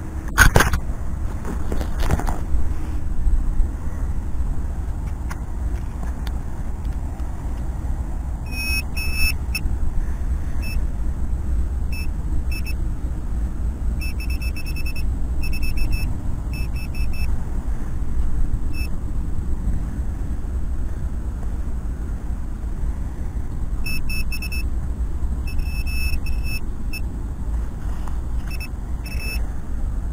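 Handheld metal-detecting pinpointer beeping in short rapid bursts of high beeps, on and off, as it signals metal close to its tip in the dug hole. Two sharp knocks come near the start, and a steady low rumble runs underneath.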